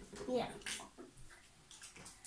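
Faint wet squelches and sputters of acrylic paint being squeezed out of a plastic tube into glue, after a child's brief "yeah".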